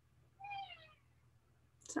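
A house cat meowing once, a short call that falls in pitch.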